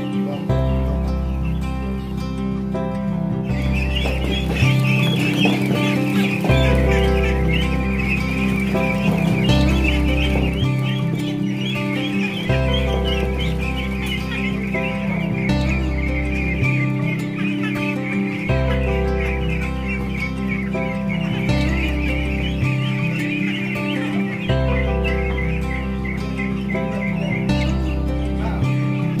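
Background music with a slow, repeating bass line. Over it, from a few seconds in until near the end, a crowd of ducklings peeps and chatters without pause.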